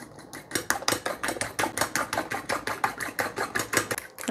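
Metal spoon beating eggs in a small stainless-steel bowl: a rapid, steady run of light clinks against the bowl's side, about seven a second.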